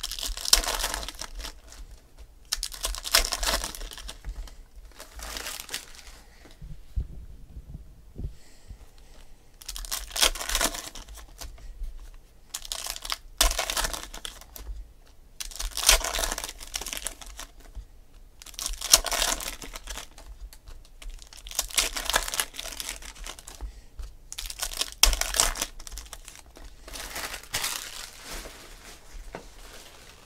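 2016 Panini Select football card-pack wrappers being torn open and crinkled by hand, with the cards handled between them, in repeated bursts every two to three seconds.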